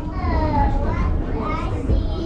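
A child's high voice talking and calling out over the steady low rumble of the Lookout Mountain Incline Railway car running on its track.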